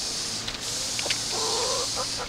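A chicken clucking, with one drawn-out wavering call about a second and a half in, over a steady low hum and a faint high hiss.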